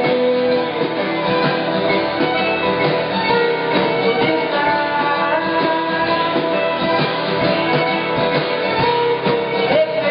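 An alt-country band playing live: strummed acoustic guitar, electric guitar, bass guitar, drums and fiddle, the fiddle holding long notes with slides over a steady beat.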